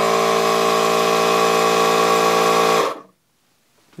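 Milwaukee cordless tyre inflator's compressor running steadily to pump up a bicycle tyre, then cutting off abruptly about three seconds in as it reaches its 22 psi preset and shuts off automatically.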